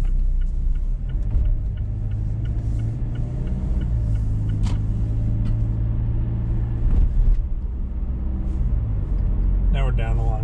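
Car engine and road rumble heard inside the cabin, the engine's pitch rising as the car accelerates, with a light even ticking during the first few seconds.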